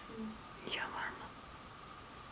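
A brief, faint whisper-like sound about a second in, over a faint steady whine.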